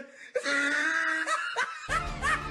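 A person laughing, one drawn-out laugh after a brief pause.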